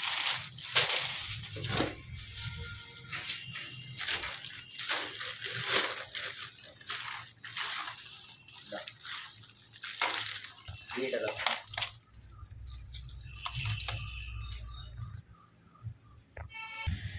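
Plastic bags and packets rustling and crinkling in short bursts as fishing tackle is handled, with voices and music faintly in the background.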